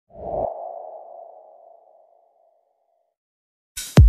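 Logo-intro sound effect: a short low thump with a ringing, sonar-like ping that fades away over about two seconds. Near the end a loud swoosh drops into a deep bass hit.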